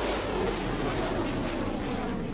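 Missile rocket motor firing at liftoff: a steady rushing noise.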